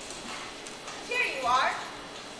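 A high-pitched voice giving a short, wavering, whinny-like cry about a second in, lasting under a second.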